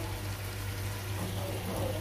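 Minced meat and diced potatoes sizzling steadily in a pot, over a constant low hum.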